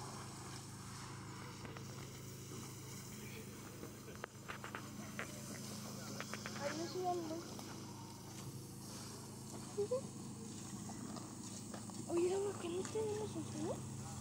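Distant voices of people talking over a steady low machine hum, with a quick run of light clicks about four to six seconds in.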